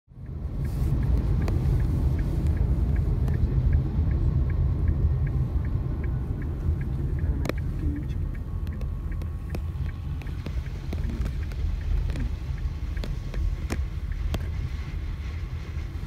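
Steady low rumble of a road vehicle in motion, heard from inside, with faint regular ticking about four times a second during the first few seconds and a few scattered clicks.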